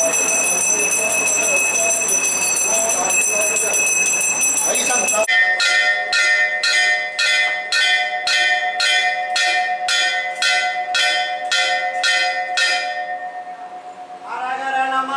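Temple bells ringing continuously with voices under them; then, after a cut, a brass hand bell rung steadily about two strokes a second during the lamp offering (arati), dying away near the end.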